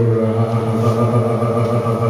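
A man singing into a microphone, holding one long, steady note with a slight waver.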